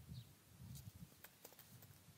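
Faint, scattered clicks of computer keyboard keys being typed.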